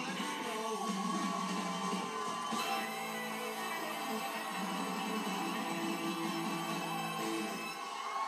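Music playing from a television show, heard through the TV's speakers across the room.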